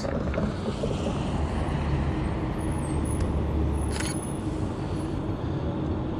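Street traffic: a steady low rumble of road vehicles, heaviest in the middle seconds, with a short click about four seconds in.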